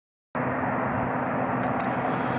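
19 hp Kawasaki V-twin engine on a Gravely mower running steadily, with no surging.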